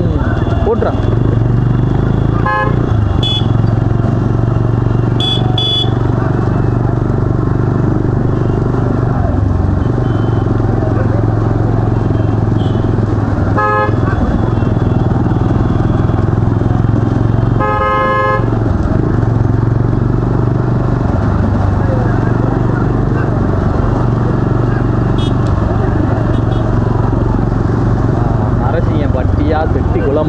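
A pack of motorcycles running together in a steady engine drone, with several short horn toots and a longer horn blast about 18 seconds in.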